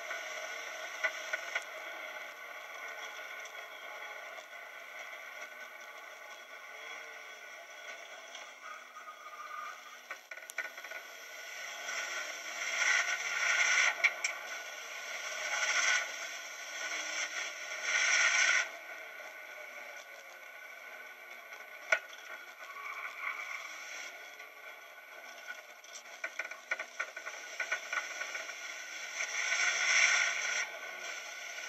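In-cabin sound of a Holden Rodeo ute with a swapped-in C20LET turbocharged 2.0-litre four-cylinder engine, driven hard around a race track, heard thin and muffled with no bass. It swells louder for a few seconds from about twelve seconds in and again near the end, with a few sharp clicks and rattles.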